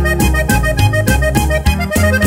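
Instrumental break of a norteño corrido: a button accordion plays the melody over bass notes on a steady, even beat.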